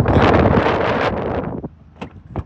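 Wind buffeting the microphone of a handheld phone, a loud rumbling rush that drops away about one and a half seconds in.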